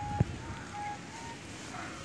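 Outdoor beach ambience of faint distant voices and wind on the microphone, with a short high tone repeating about every half second. A single sharp knock comes about a fifth of a second in.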